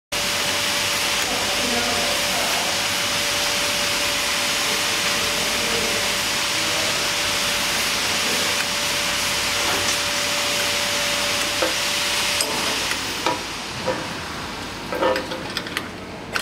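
Steady loud hiss with a faint steady hum from the running shrink-packing machinery. It dies away about three-quarters of the way through, leaving light clicks and taps of hands handling the metal parts of the sealing bar.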